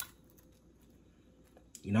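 Near silence: faint room tone after a single brief click, then a man starts speaking near the end.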